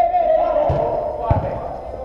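Two dull thuds of a football being kicked, about two-thirds of a second in and again half a second later, over players' voices calling out in a reverberant indoor hall.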